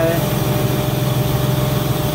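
Electric watermaker running steadily: a 48V Golden Motor driving a Cat 277 high-pressure pump at about 1500 RPM, with the membrane pressure brought up to about 850 psi. A loud, even hum with a thin constant whine above it.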